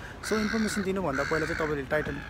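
A man talking close to the microphone, with a crow cawing through the talk.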